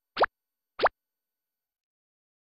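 Two short cartoon 'plop' sound effects, each a quick sliding blip, about two-thirds of a second apart.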